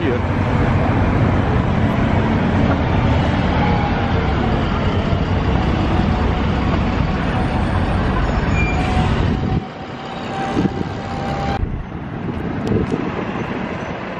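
Road traffic on a busy city street, cars and buses passing close by: a loud, rumbling wash of noise that drops off suddenly about nine and a half seconds in and stays quieter after.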